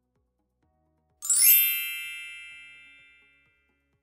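A single bell-like chime sound effect about a second in, struck once and ringing out for about two seconds, marking the change to the next numbered fact.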